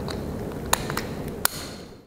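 A few sharp metallic clicks as a brass quick-release hose coupling is snapped onto a concrete saw's water feed fitting, over a steady faint background hiss.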